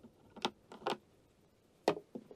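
Three short clicks as the solar panel's charging cable is pulled from the power station's input socket and handled, two about half a second apart and one near the end.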